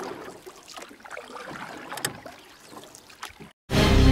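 Water sloshing and splashing around someone wading in a shallow pond, with some wind on the microphone and one sharper sound about two seconds in. Background music cuts in near the end.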